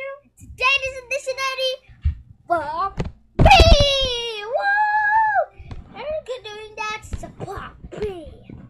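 A boy's voice singing and shouting without clear words, in short phrases that slide up and down in pitch, with a loud call about three and a half seconds in and a held note about five seconds in.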